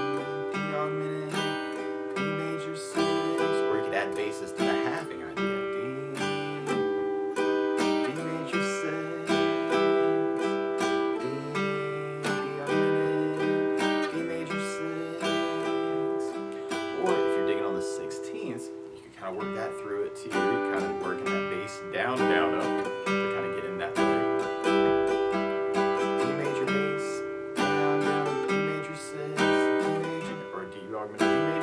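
Acoustic guitar strummed in a steady bass-down-up pattern, a bass note struck and then the chord strummed, working the intro's D, D augmented, D major 6 idea. The chord moves up the G string from A to A sharp to B, with a short break a little past the middle.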